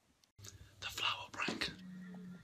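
Faint whispering: a few short, breathy whispered sounds after a moment of silence.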